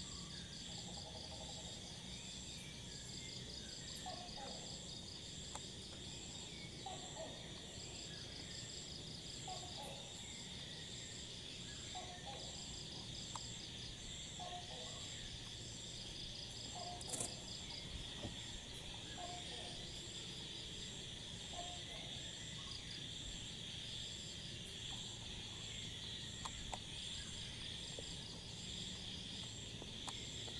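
Steady chorus of insects such as crickets at dusk, with several high trilling and pulsing layers. Faint short calls lower down repeat every second or two.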